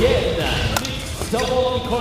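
Badminton racket striking the shuttlecock during a rally: two sharp hits about half a second apart, in a large hall.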